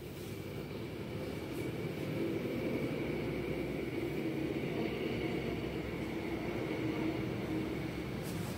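Steady engine drone from a motor vehicle, growing louder over the first three seconds and then holding.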